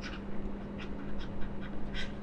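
Stylus strokes on a tablet screen during handwriting: a scatter of short, faint ticks and scratches. A steady electrical hum runs underneath.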